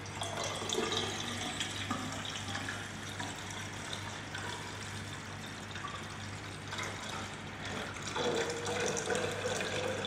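Distilled water poured steadily from a plastic jug into a tall glass graduated cylinder, filling it toward the 1000 ml mark. A clearer tone comes into the splashing about eight seconds in.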